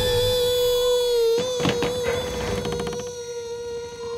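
A small boy's long, held scream at one steady pitch as he falls, slowly growing fainter toward the end. A brief whoosh cuts across it about a second and a half in.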